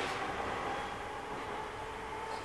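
Thyssenkrupp Evolution machine-room-less traction elevator's landing doors sliding shut as the car sets off, a steady whir with a faint high tone.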